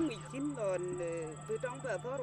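A woman speaking in a language other than English, over a steady low hum and a faint thin high tone.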